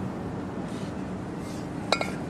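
A pair of kettlebells knocking together once near the end, a single sharp metallic clink with a brief ring, over steady background noise.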